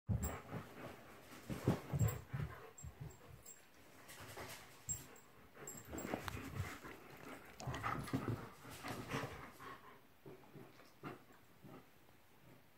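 Two German Shepherds playing together, making irregular bursts of dog noises. It is loudest about two seconds in and again around eight to nine seconds, then dies down near the end.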